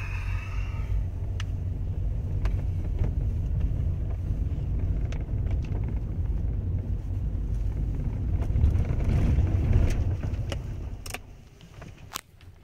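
Car driving, with a steady low road-and-engine rumble heard from inside the cabin. It swells about nine seconds in, then drops away near the end.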